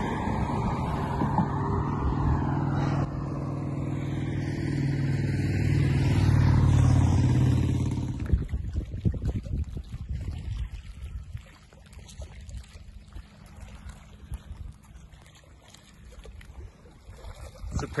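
A motor vehicle's engine hum, steady and growing louder until about seven seconds in, then fading away within a second as it passes. After that, only quieter, uneven outdoor noise.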